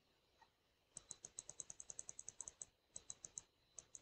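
Faint, rapid clicking at a computer's controls, about eight clicks a second, starting about a second in with a short break near the middle.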